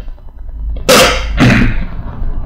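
A man coughs twice in quick succession, about a second in and again half a second later.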